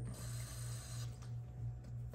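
A faint, short run of tap water from a kitchen faucet into a KF94 mask held under the spout, shutting off about a second in. A steady low hum sits underneath.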